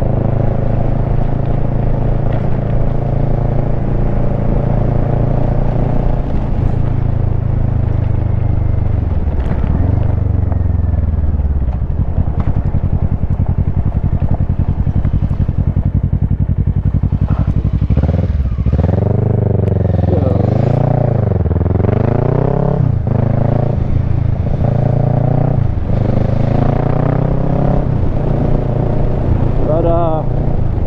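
Kawasaki Versys 650's parallel-twin engine running under way, heard from the rider's seat. It holds steady at first, drops in pitch as the bike slows about ten seconds in, then rises and falls several times with throttle changes past the middle before settling again.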